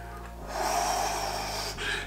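A man's long, breathy rush of air through the mouth, lasting just over a second and stopping abruptly.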